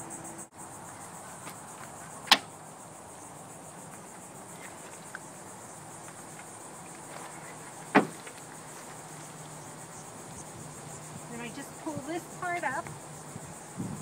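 A steady, high insect chorus, like crickets, buzzing throughout, broken by two sharp knocks about six seconds apart as the van's door and window screen are handled.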